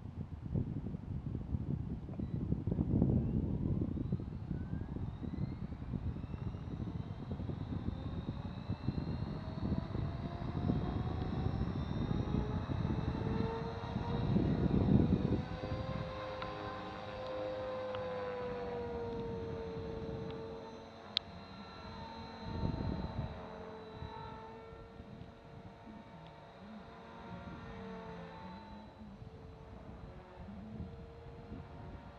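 A 450-size electric RC helicopter's rotor and motor whine, rising and falling in pitch as it flies. Gusts of wind rumble on the microphone, loudest in the first half, and there is one sharp click about 21 seconds in.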